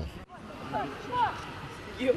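A man's voice breaks off just after the start. Then comes outdoor background sound of distant voices, with a few short high calls.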